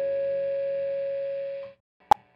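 A distorted electric guitar chord held and ringing out at the end of a song, with one note standing out, fading slowly and then cut off suddenly near the end.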